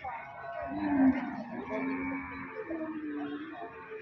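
Water buffalo lowing: one long, steady call starting just under a second in, then a second, shorter call a little higher in pitch about three seconds in.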